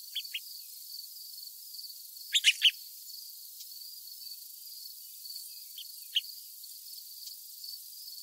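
Small songbirds giving short, sharp call notes: two near the start, a loud group of three about two and a half seconds in, and two more around six seconds. Under them runs a steady, high, pulsing trill.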